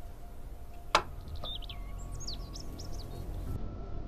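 Birds chirping in a short run of quick high calls, with one sharp tap about a second in, over faint background music.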